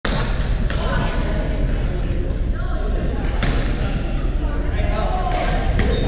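Badminton racquets striking a shuttlecock in a large gym hall: several sharp pops at irregular spacing over a steady low rumble and voices.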